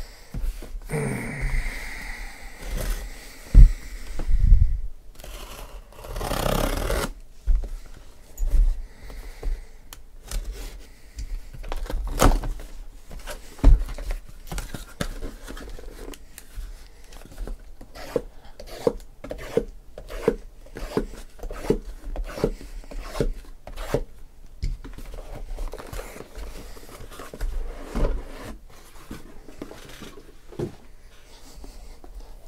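Cardboard shipping case being handled and unpacked, sealed card hobby boxes slid out and set down in a stack: cardboard scraping, a longer scrape about six seconds in, and many light knocks, the loudest two thumps a few seconds in.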